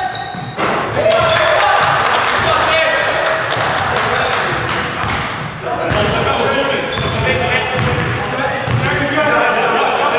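A basketball game in a gym with an echoing hall: a basketball bouncing on the hardwood floor, shoes squeaking, and players' voices calling out.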